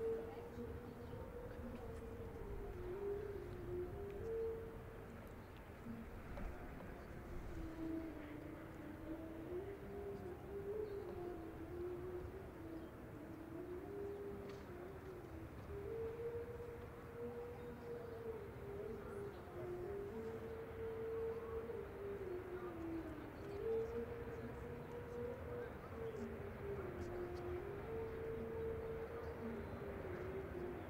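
A faint, slow melody of long held notes that step up and down within a narrow range, over a low, steady background rumble.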